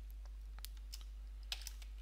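Computer keyboard keys typed in a few scattered keystrokes, with a quick cluster of them near the end, over a steady low hum.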